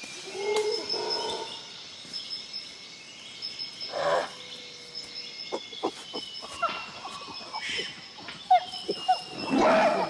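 Football players shouting to each other during play, the loudest shout near the end, with a few sharp knocks of the ball being kicked in between.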